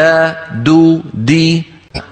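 A man reciting the Arabic letter dal with its three short vowels, da, du, di, as three drawn-out syllables held at a steady, chant-like pitch, for pronunciation practice in Qur'anic recitation.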